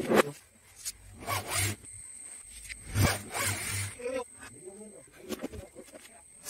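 A few short bursts of rubbing and scraping, about a second apart, from materials being handled during false-ceiling framing work.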